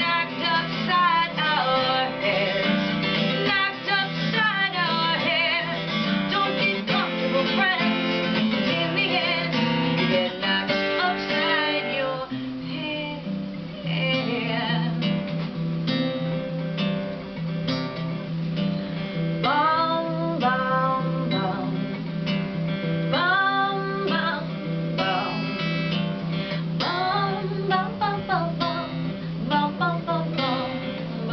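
Acoustic guitar strummed and picked steadily, with a voice singing over it for the first dozen seconds and again in short phrases in the second half.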